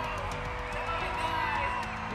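Music playing loudly over an arena sound system, with the voices of a large crowd cheering along.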